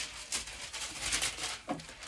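Rustling and crinkling of a thin tracing-paper sewing pattern piece as it is taken down and handled, in a few uneven strokes.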